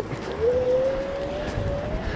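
Onewheel electric board's hub motor whining, its pitch rising slowly as it picks up speed on a dirt trail, over a low rumble.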